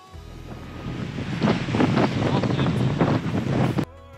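Wind buffeting the microphone over waves surging and breaking against coastal rocks, growing louder, then cutting off suddenly near the end.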